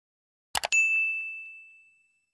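Sound effect of an animated subscribe button: two quick mouse-style clicks, then a single bright bell ding that rings and fades away over about a second, marking the notification bell being switched on.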